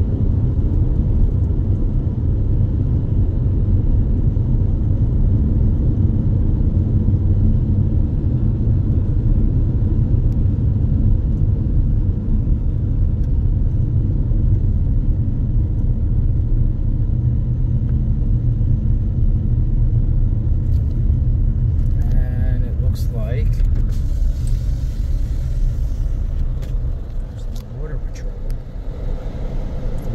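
Steady low rumble of a car's tyres and engine heard from inside the cabin while driving at highway speed. It eases off over the last few seconds as the car slows, with a few short clicks and brief higher sounds a little before that.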